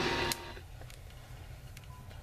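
GE 7-4545C clock radio being switched off. The AM broadcast cuts off abruptly with a switch click about a third of a second in, and a faint low hum is left.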